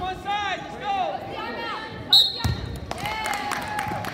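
Wrestling shoes squeaking on a gym wrestling mat: a run of short, sharp squeaks, then a brief high tone and a heavy thud about two seconds in as the wrestlers scramble.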